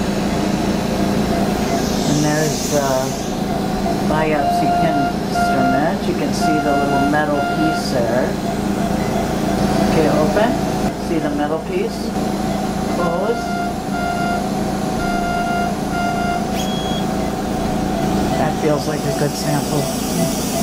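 Patient monitor beeping a steady run of short, evenly spaced beeps, breaking off for a few seconds in the middle. Indistinct voices sound underneath.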